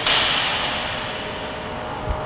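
A sudden whoosh of hissing noise that fades away over about a second and a half, from an explosive dumbbell jump and shrug, with the dumbbells driven up from the thighs toward the shoulders.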